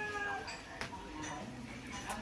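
A young girl's high voice trailing off after saying goodbye, followed by faint soft vocal sounds, with a single sharp click a little under a second in.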